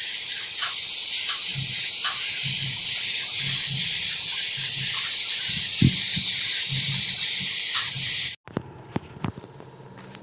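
Gravity-feed compressed-air spray gun spraying paint onto a car door: a loud, steady hiss of air and atomised paint that breaks off suddenly about eight seconds in.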